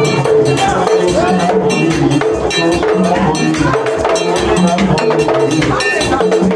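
Haitian Vodou ceremonial music played loud and steady: hand drums and clanging metal percussion keep a driving rhythm under group singing.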